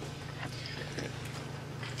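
A pause between speech: a low steady hum with a few faint clicks, picked up by a handheld microphone.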